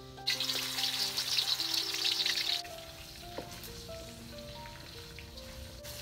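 Pork ribs frying in hot oil: a loud sizzle starts suddenly, runs about two seconds, then cuts off to a quieter sizzle, over background music.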